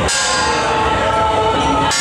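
Brass hand gong struck slowly, once at the start and again near the end, each stroke ringing on between strikes.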